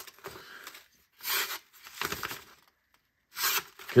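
Curved folding-knife blade slicing through paper in about four short, halting strokes with pauses between. The blade snags where its curved edge changes angle at the hump.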